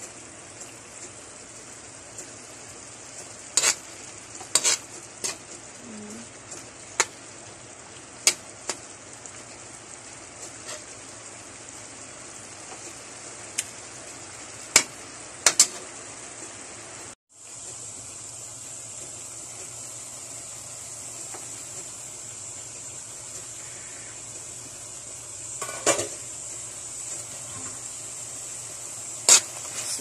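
Pork in shrimp-paste sauce sizzling steadily in a metal wok, while a metal spoon stirs it and clinks sharply against the pan at irregular moments. The sound drops out for a split second about halfway through.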